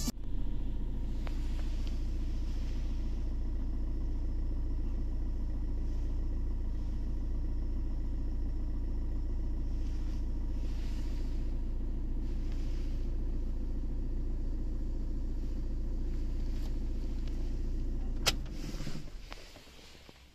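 Fiat Grande Punto's engine idling, heard from inside the cabin as a steady low rumble. A little past eighteen seconds a sharp click comes, and the engine runs down and stops.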